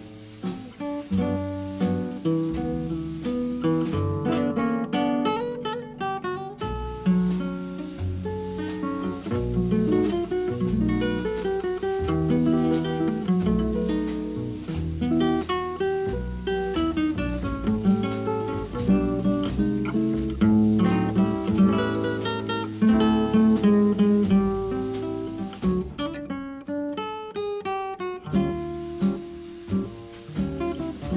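Instrumental background music led by plucked acoustic guitar, with a moving bass line underneath.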